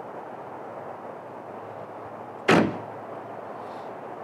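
A car's hood slammed shut once, a single sharp bang about two and a half seconds in, over a steady background hiss.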